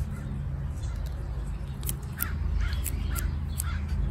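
A bird calling outdoors: a run of about five short calls, roughly two a second, in the second half, over a steady low background rumble.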